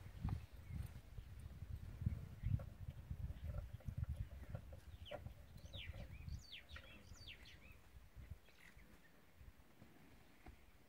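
A bird calling a run of short, quick, falling whistled notes around the middle, over low, uneven rumbling noise on the microphone that fades out after about six seconds.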